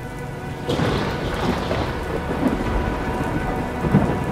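Heavy rain pouring down, with a thunderstorm rumble that swells in a little under a second in. A sharper crack near the end.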